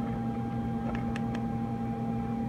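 Steady electrical hum with a faint continuous test tone above it, from a CB transmitter test bench with an audio tone driving the AM carrier to 100% modulation.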